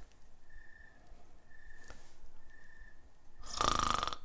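A man snoring while asleep in a chair: quiet breathing, then one loud snore near the end.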